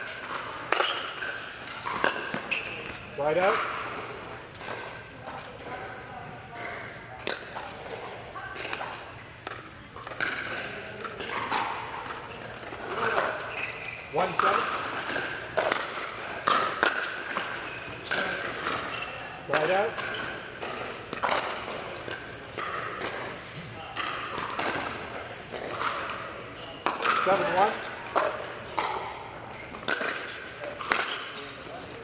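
Pickleball rally on an indoor court: repeated sharp pops of paddles striking the hollow plastic ball and the ball bouncing on the hard court, echoing in a large hall. A few short rising squeaks of shoes on the court come in between, over a background of voices.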